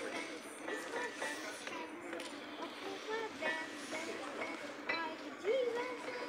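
Old upright piano, a child picking out scattered, uneven single notes and small clusters on its keys.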